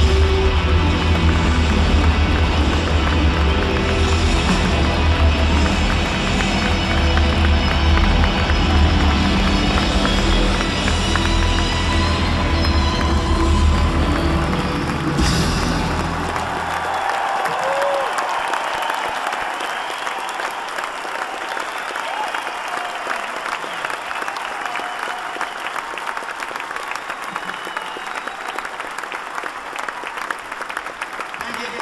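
A live rock band finishes a song, its music with heavy bass stopping about halfway through, and a large concert audience breaks into applause and cheering that goes on, slowly fading.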